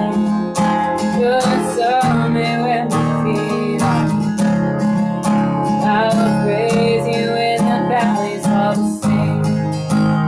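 Steel-string acoustic guitar with a capo, strummed in steady chords. The chord shifts to a lower bass about nine seconds in. A woman's voice sings along over it.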